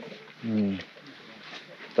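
A man's short vocal grunt, a single low voiced sound lasting under half a second about half a second in, followed by faint background hiss.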